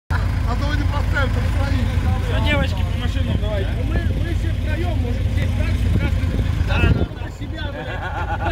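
Several people talking over a steady low rumble, which drops away sharply about seven seconds in.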